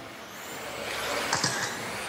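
Radio-controlled 2WD buggies running on an indoor track: a rush of noise that grows louder, with a couple of light knocks about a second in.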